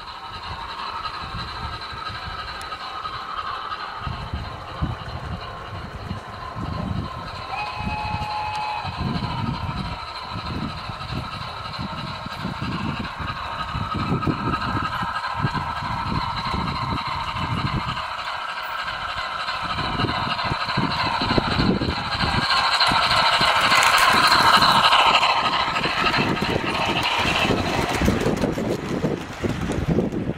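O gauge model steam locomotive and coach running along garden-layout track, with steady wheel and motor noise. It grows louder toward a peak about three-quarters of the way through as the train passes close, then fades. A brief tone sounds about eight seconds in.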